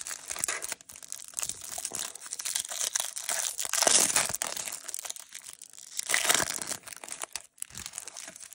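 Clear plastic wrapper on a pack of trading cards crinkling and tearing as it is peeled open by hand, an irregular crackle with louder stretches around the middle and again about six seconds in.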